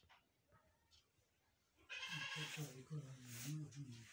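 A person's voice, speaking or reciting with a wavering pitch, starting loud about two seconds in after a near-quiet start.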